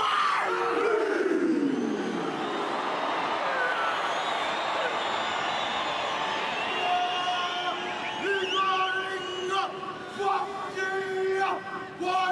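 Haka performed by a rugby team: the leader's long shouted call opens it, falling in pitch, over a stadium crowd cheering. From about halfway, voices chant together in long held notes over the crowd.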